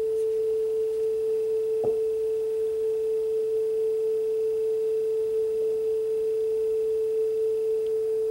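Steady single test tone from a speed calibration tape playing on a Sansui SC3300 cassette deck, its pitch held even. The deck is now running at close to the correct tape speed after its motor speed adjustment. A faint tick comes about two seconds in.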